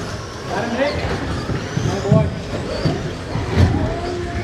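Radio-controlled stock trucks running around an indoor race track under people talking, with two heavy thumps, about two seconds in and again near the end.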